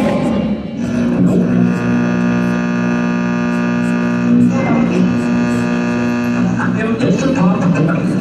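Indoor percussion ensemble playing: a sustained chord held for about six seconds, with a few hits partway through and drum and mallet strokes returning near the end.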